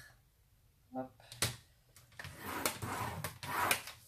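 A paper trimmer's blade carriage sliding along its rail to score a fold line 1 cm in on a strip of kraft paper, a scraping run of about two seconds with sharp clicks, after a single click.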